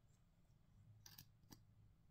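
Near silence: room tone with a few faint clicks about a second in and again shortly after, from a make-up product being handled.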